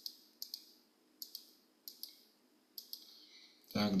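About eight short sharp clicks, mostly in close pairs, each placing a dot with the pen tool of an interactive whiteboard program.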